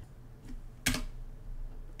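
Computer keyboard being typed on: a few sparse keystrokes, one of them much louder than the rest, about a second in.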